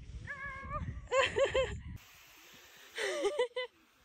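A woman's wordless high-pitched voice: a held whining note, then a quick run of short yelps, and after a break one more cry that slides down and back up. A low wind rumble on the microphone sits under the first half and cuts off suddenly.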